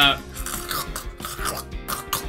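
Soft background music, with a brief hesitant 'uh' at the very start.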